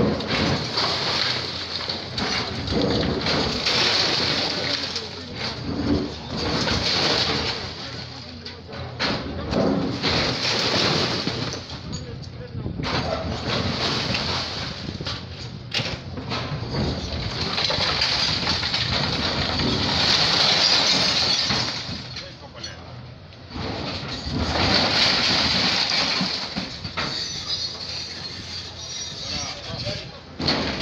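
People talking and calling out over the noise of an excavator demolishing concrete market stalls, with occasional sharp knocks and crashes.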